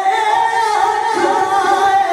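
Unaccompanied solo singing voice holding long, wavering notes, changing pitch a couple of times.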